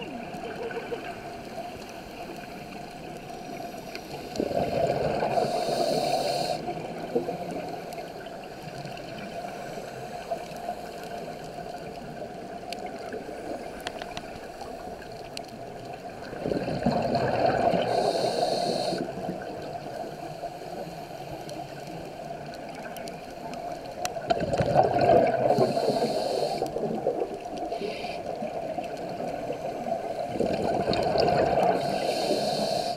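Underwater sound of a diver breathing out: exhaled bubbles rumble out in three bursts of a couple of seconds each, about 12 and then 8 seconds apart, over a steady hiss with faint clicks.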